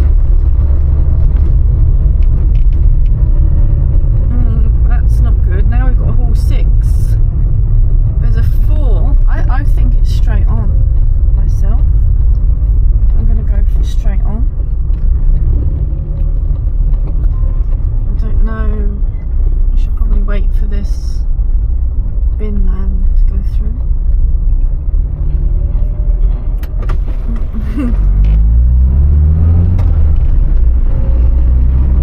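Austin Allegro 1500 Estate's 1.5-litre four-cylinder engine heard from inside the cabin, a low steady drone while the car rolls slowly, then rising in pitch near the end as it pulls away.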